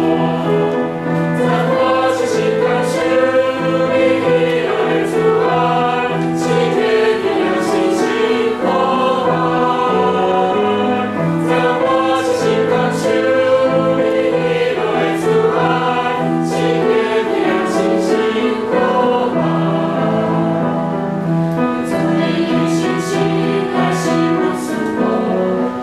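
Mixed choir of young men and women singing a hymn together, holding long sustained notes phrase by phrase.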